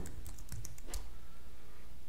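Computer keyboard keystrokes: a few short clicks in the first second as a login password is typed and entered.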